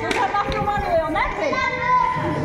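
Children's voices shouting and calling out while playing, several voices overlapping, with a sharp click or splash right at the start.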